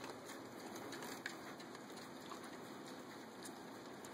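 Baby mini pigs faintly chewing and snuffling blueberries at a feeding bowl, with a few small smacking clicks.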